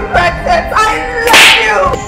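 A loud, short whoosh sound effect about one and a half seconds in, over dramatic background music.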